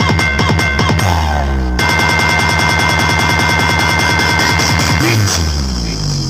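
Loud, bass-heavy electronic DJ music played through a large power-bass speaker stack. About a second in, the beat gives way to a held bass note, then returns as a fast, rapid pulse, and near the end the bass slides down in pitch.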